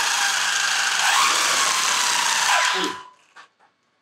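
WLtoys 124016 RC truck held off the ground at high throttle: its sensorless brushless motor and drivetrain whine at high speed while the wheels spin free with the tyres ballooned out. The pitch rises about a second in, then falls and cuts off about three seconds in as the motor winds down.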